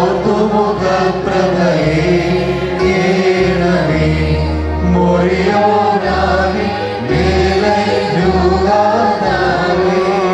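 Liturgical chant of the Holy Qurbana, sung over sustained low accompanying notes that change every second or so.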